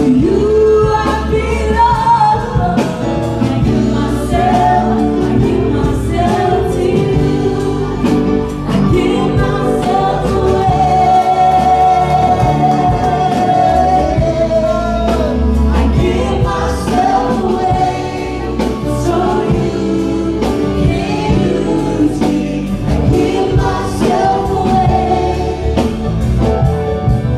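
Live gospel worship music: a woman singing lead into a microphone over electric bass and a drum kit.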